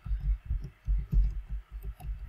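Computer keyboard typing: a quick, irregular run of dull, low keystroke thuds with faint clicks, about seven or eight strokes in two seconds.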